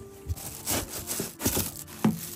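Plastic bag and cardboard box rustling and scraping as a flask is pulled out of its packaging, in several short bursts with a louder one at the end.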